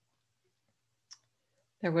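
Near silence broken by a single short click about a second in, followed near the end by a woman's voice starting to speak.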